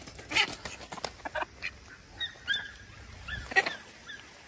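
Ducks giving scattered short calls as the puppy herds them, with a few brief sharp noises, the loudest near the end.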